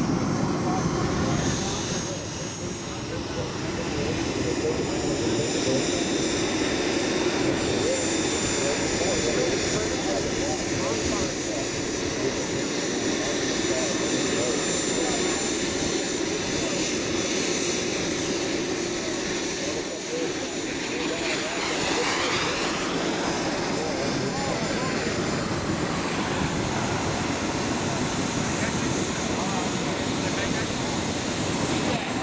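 Radio-controlled scale MiG-15 model jet's engine running steadily in flight and on its landing approach: a broad rush with a thin high whine over it. There is a brief sweep in pitch a little past the middle.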